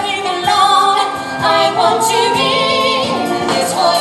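Musical-theatre chorus singing an upbeat ensemble number with musical accompaniment. About halfway through, a voice holds notes with a wide vibrato.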